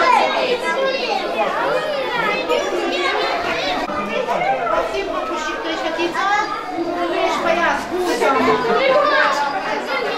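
A crowd of young children chattering and calling out at once, many high voices overlapping with no single clear speaker.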